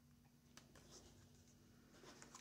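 Near silence: room tone with a few faint ticks and rubs of a playing-card-sized oracle card being handled on a table, about half a second to a second in.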